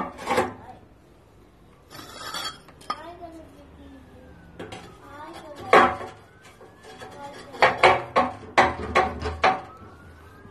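Refractory firebricks being pushed into place inside a steel wood-fired oven's firebox, clanking against the steel with short ringing knocks and a brief scrape. There is one loud clank near the middle and a quick run of clanks near the end.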